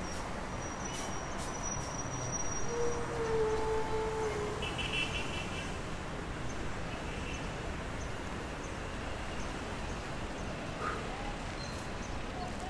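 Steady wash of city street traffic, with a brief held tone about three seconds in.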